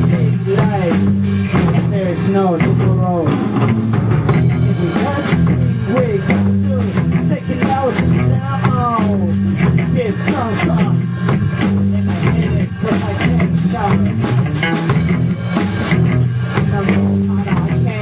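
Funk band jamming live: drum kit and electric guitar playing over a steady, repeating low groove, with bending pitched lines through it.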